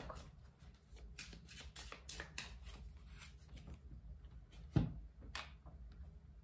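A tarot deck being shuffled by hand: a quick run of soft card flicks and slides, with one louder knock near the end.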